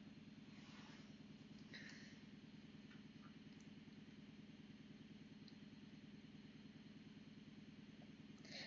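Near silence: a faint steady low hum, with one faint brief rustle about two seconds in.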